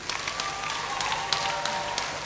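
Audience applause with scattered sharp claps, with a few held musical notes playing under it.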